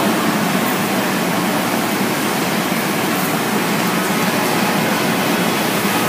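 Steady, even background hiss of room tone, with no speech.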